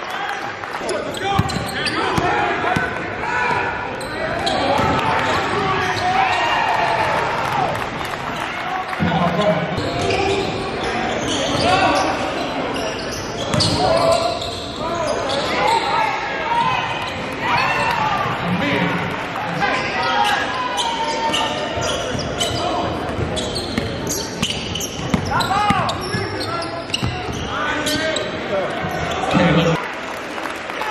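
Basketball game sound in a gym: players and spectators calling out, with a basketball bouncing on the hardwood floor, echoing in the large hall.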